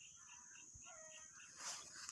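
Near silence: faint outdoor ambience with a steady high hiss, soft repeated chirps and a brief rustle near the end.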